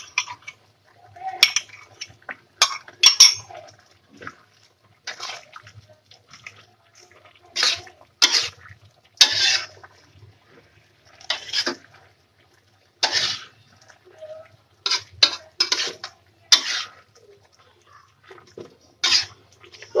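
Spatula scraping and clattering against a wok as stir-fried vegetables are tossed, in short irregular strokes over a faint low steady hum. The stirring is working a cornstarch slurry evenly into the sauce as it thickens.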